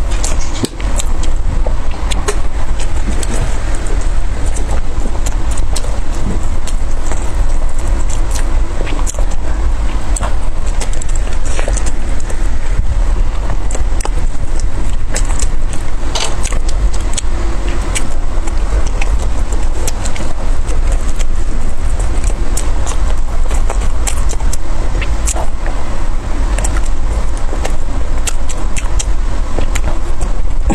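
Close-miked chewing and wet mouth clicks from eating soft steamed buns, with many short sharp clicks throughout over a steady low rumble.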